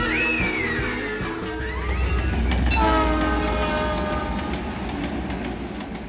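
A rock song ends on sliding, wailing tones. About three seconds in, a train horn sounds over a low rumble, then fades away.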